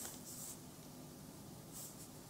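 Faint rustling of paper being handled, once near the start and again briefly near the end, over quiet room hiss.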